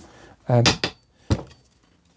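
A single sharp metallic clink with a short ring, as a thin metal tube, the antenna's centre post, is picked up and knocks against something.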